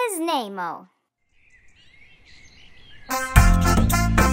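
A voice speaking briefly with wide swoops in pitch, a moment of silence, then faint outdoor ambience with a few bird chirps. About three seconds in, upbeat children's music with a steady beat starts, loudly.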